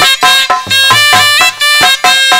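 Instrumental interlude of Aalha folk music: a reed wind instrument plays a melody of held notes over a steady dholak beat, about four strokes a second.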